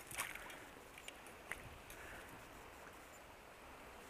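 Faint flow of shallow river water around a salmon held in a landing net, with a couple of light ticks, one just after the start and one about a second and a half in.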